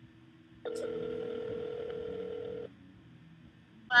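A phone beeping during a call: one steady electronic tone about two seconds long that starts just under a second in and cuts off sharply. It is an alert on the line, which the person on the other end guesses is a call coming in on the other line.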